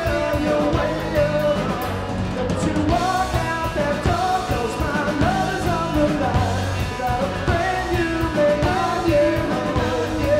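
Live pop-rock band playing: a male lead vocal sung over electric bass, electric guitar and a drum kit.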